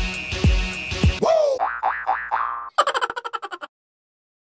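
Cartoon intro jingle: an electronic beat with a deep kick about twice a second gives way, about a second in, to a springy boing effect, a quick run of short notes and a fast chirpy flourish that stops abruptly near the end.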